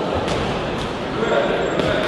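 Indistinct shouting from spectators and corners, with a few short thuds from the boxing ring: gloved punches landing or boxers' shoes striking the canvas.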